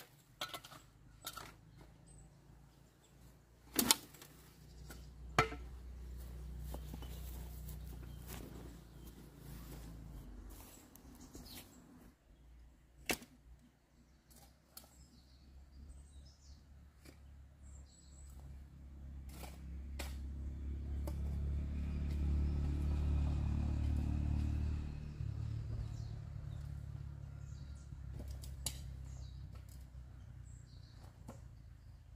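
Shovel work in a metal wheelbarrow loaded with cut weeds: a handful of sharp scrapes and knocks, the loudest about four seconds in. Beneath them is a low rumble that swells in the second half and then eases, and birds chirp faintly now and then.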